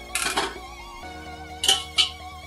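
Instrumental background music, over which comes a brief scraping rush just after the start as a block of butter slides off a steel plate into a steel kadai, then two sharp metal clinks near the end as the plate knocks against the pan.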